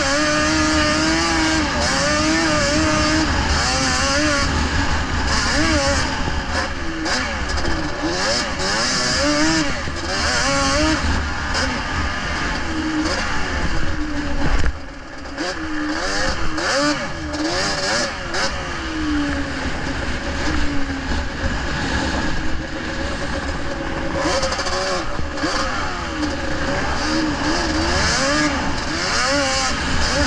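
Racing quad's engine, heard from on board, revving hard with its pitch rising and falling over and over as it accelerates and backs off. The sound drops sharply for a moment about halfway through, then picks up again.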